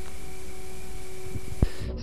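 Steady hiss with faint hum tones, like analogue video tape playing blank, ending in a single click near the end.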